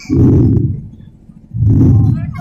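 Two short bursts of low rumbling noise through the stage microphone, each about half a second long, the first just after the start and the second about a second and a half in, with a quiet gap between.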